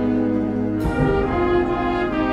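High school symphonic band playing live: held brass-heavy chords, moving to a new chord that is struck with a sharp percussion accent about a second in.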